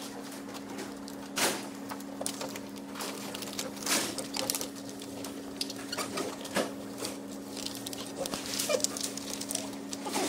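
Thin plastic reflector sheet of an LCD TV backlight crackling and clicking as it is handled and pressed down by hand over the LED strips, with the loudest crackles about one and a half and four seconds in. A steady low hum runs underneath.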